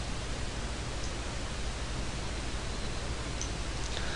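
Steady hiss of the recording's background noise, an even noise floor with a faint low hum beneath it.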